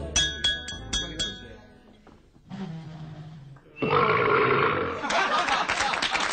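A wine glass tapped about five times, each strike ringing. A low belch follows about two and a half seconds in, and from about four seconds a table of diners cheers and claps loudly.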